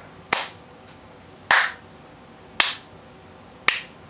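Four sharp single hand claps at a slow, even beat about a second apart, each with a short room echo.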